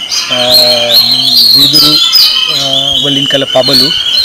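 Small birds chirping and twittering, a rapid run of high, quick chirps with no break, over a man's low voice.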